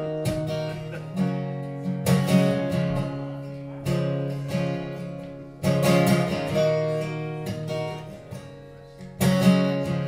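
Acoustic guitar strumming slow chords that ring out and fade, with a fresh strum every one to two seconds, as the instrumental intro of a song.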